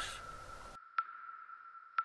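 A steady, high electronic tone from the trailer's sound design, with a sharp tick about once a second, like a sonar ping. The faint background noise under it cuts out shortly before the first second.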